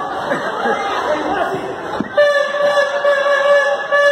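Arena crowd chatter and voices, then about halfway through a sharp click and music with steady held notes starts abruptly.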